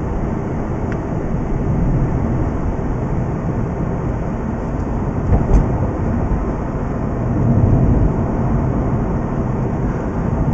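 Inside a moving Mazda RX-8, with its twin-rotor Wankel rotary engine: steady road and engine rumble at moderate speed. There is a brief knock about halfway through.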